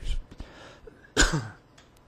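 A man clearing his throat once, a short burst about a second in.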